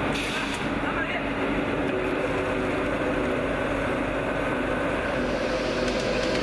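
CNC ring rolling machine running with a steady mechanical hum while a hot ring blank is loaded and rolled.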